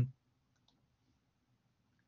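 Near silence with a couple of faint computer mouse clicks about half a second in.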